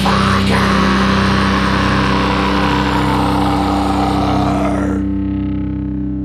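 Death metal recording: a distorted electric guitar chord held and ringing out. About five seconds in the high end drops away, leaving a low sustained tone that slowly fades.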